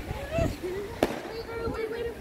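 A single sharp firecracker pop about a second in, with a fainter crack at the very start, over background voices.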